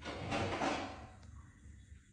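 A dishwasher being opened: a soft sliding noise that fades out about a second in.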